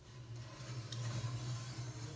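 Boiling water being poured into an empty glass baking dish, a steady pour with a low hum under it.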